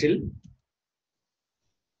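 The end of a man's spoken word, then near silence: gated room tone, with no clicks or typing audible.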